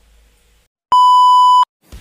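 A single loud electronic beep at one steady pitch, lasting under a second and cutting in and out abruptly.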